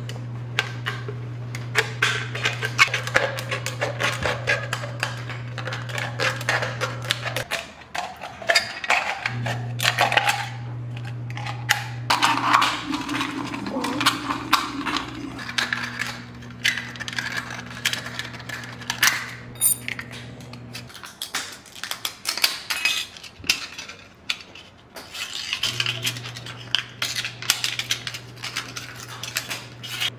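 Thin aluminium drink can being pierced, cut open and handled, with a dense run of irregular metallic crinkles, clicks and snips. A steady low hum runs beneath and drops out twice.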